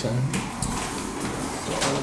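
Inside a small hydraulic elevator car: a low steady hum with a couple of light clicks, as a car button is pressed.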